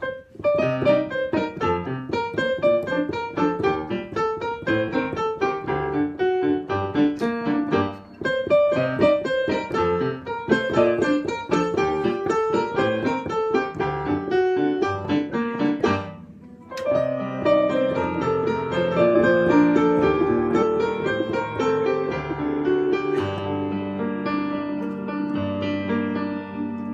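Digital piano played with both hands: a quick, busy run of notes over chords, breaking briefly about eight seconds in and again around sixteen seconds, after which it carries on with fuller held chords and low bass notes.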